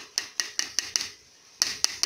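Garlic slices being tipped from a dish into a pot of zobo, heard as sharp clicks and taps: about five quick taps in the first second, then two more close together near the end.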